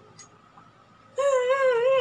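A dog howling: one high, wavering note that starts a little over a second in and runs on to the end.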